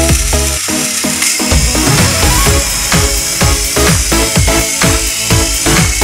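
Electronic dance music with a fast, steady beat and a sustained hissing wash over it. The bass drops out briefly about a second in, then the beat comes back in full.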